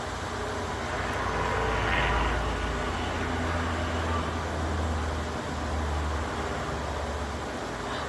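A low, steady rumble, a little louder about two seconds in.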